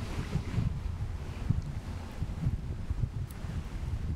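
Wind on an outdoor microphone: a low rumble that rises and falls in gusts, with no voice over it.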